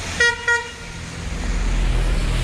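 A vehicle horn beeps twice in quick succession, then the low rumble of passing road traffic grows louder.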